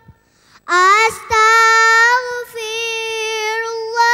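A young girl singing into a microphone without accompaniment: after a short silence her voice slides up into long held notes, broken briefly twice.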